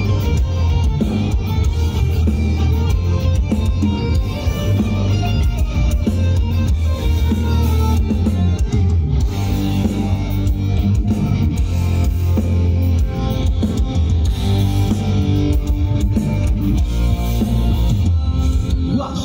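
Folk metal band playing live, with distorted electric guitars, bass and a drum kit in a continuous, dense passage, recorded loud on a phone from the crowd.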